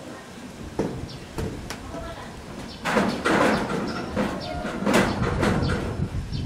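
Short high chirps of an olive-backed sunbird, repeated every second or so. Louder people's voices come in from about three seconds in and cover the chirps.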